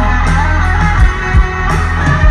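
Live rock band playing an instrumental passage: a Stratocaster-style electric guitar plays sustained notes over a steady bass line, with a few drum hits about a second in.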